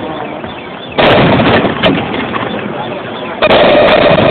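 Fireworks bursting: two loud bangs, about a second in and again near the end, each trailing off slowly.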